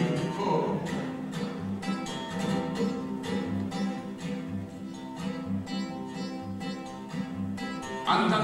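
Solo acoustic guitar playing an instrumental passage between sung verses of a corrido, plucked chords over a bass note that falls about once a second.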